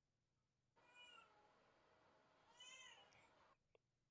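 Near silence, with two faint pitched calls that each rise and then fall, about a second in and again past the middle.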